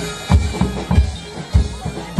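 Reog gamelan accompaniment: loud, uneven low drum strokes, about five in two seconds, under a reedy wind melody typical of the slompret, the Reog shawm.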